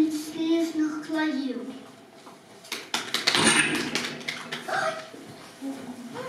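A child reciting into a microphone, then a short round of hand clapping lasting about a second and a half, then a few more words from a child.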